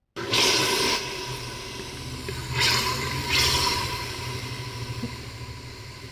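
Sliced onions hitting hot cooking oil in a large pot, sizzling loudly at once. The sizzling surges twice more, about two and a half and three and a half seconds in, then settles to a steadier, fading hiss over a low hum.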